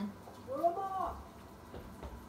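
Speech only: a voice saying the single word "Bravo", rising then falling in pitch.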